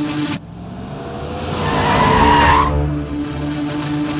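A car skidding, a rush of tyre noise with a squeal that swells and fades out after about two and a half seconds, over a sustained low music drone.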